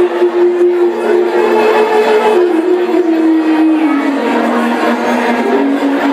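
Clarinet playing a slow Epirotic folk melody: long held notes that step down in pitch, over a small folk band, with room chatter underneath.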